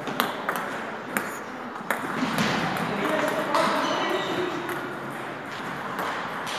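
Celluloid-type table tennis ball clicking sharply off paddles and the table, four quick taps in the first two seconds, over a background of voices in a gym hall.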